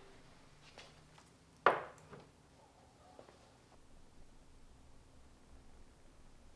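Hood of a 1989 Honda CRX being lifted and propped open: a single clunk about a second and a half in, with a few faint clicks around it. Otherwise quiet.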